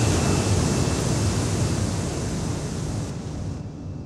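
Industrial electronic music reduced to a sustained synthesized noise wash, like surf or wind, with a faint high tone in it. It fades steadily, its high end falling away about three seconds in.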